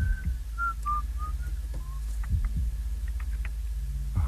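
A person whistling a short run of quick notes that step downward in pitch, ending about two seconds in, over a steady low hum.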